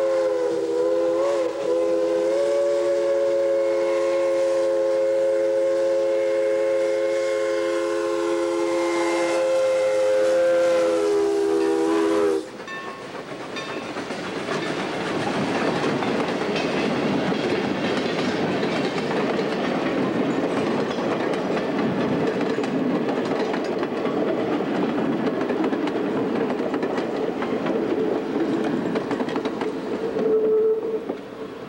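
2-8-2 steam locomotive's whistle sounding one long blast of several notes at once for about twelve seconds, then cutting off sharply. After that comes the steady rumble and clatter of freight cars rolling past close by.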